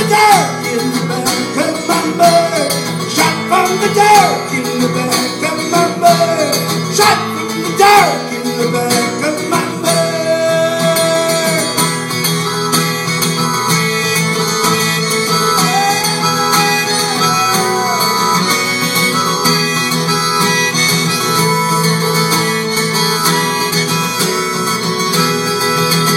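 Harmonica solo over acoustic guitar accompaniment in a live instrumental break. The harmonica plays quick bending phrases at first, then longer held notes.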